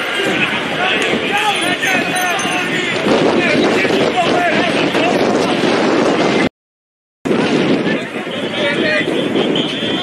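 A crowd of many voices shouting and talking over one another. Partway through, the sound cuts out completely for under a second, then the crowd noise resumes.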